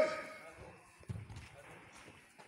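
A short shouted call right at the start, then soft thuds and scattered footfalls of players running on a grass pitch, with faint voices in the background.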